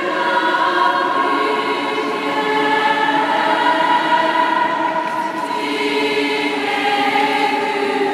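A choir singing long, held chords that move slowly from one to the next, without a break. The voices ring in a large domed stone interior.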